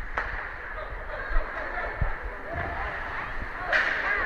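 Arena sound of a youth ice hockey game in play: a steady rink background with faint distant voices, and a couple of sharp clacks and knocks from sticks, puck and boards, one shortly after the start and one about two seconds in.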